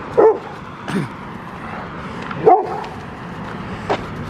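A dog on a leash gives three short yips, the second falling in pitch.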